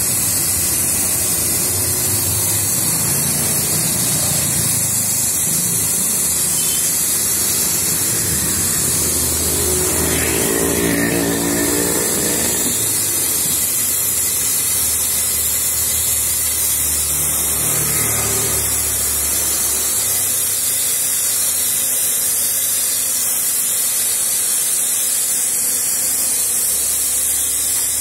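Eureka vacuum cleaner running steadily as a blower, driving a jar-type paint-spray attachment: a strong, even hiss of air and atomised paint over the hum of the motor.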